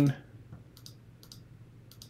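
A few faint, irregularly spaced computer mouse clicks, as on-screen up/down arrow buttons are clicked to step values.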